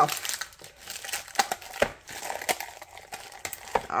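Thin plastic film crinkling and crackling as it is peeled off cured resin, in irregular crackles throughout.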